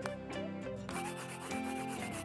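Background music with a scratchy felt-tip marker drawing sound over it, stronger in the second half.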